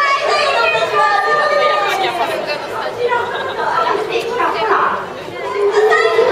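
Speech: a stage performer's voice talking over the theatre sound system, with audience chatter in a large hall.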